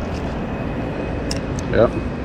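Steady rushing of shallow river water, with a couple of faint ticks about a second and a third in.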